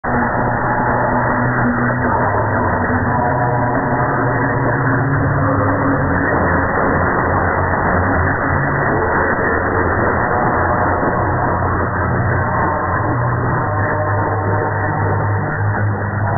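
Medium-wave AM broadcast from WFME on 1560 kHz, a religious station in New York, received over a long distance: music heard through a steady wash of static and noise. The audio is narrow and muffled.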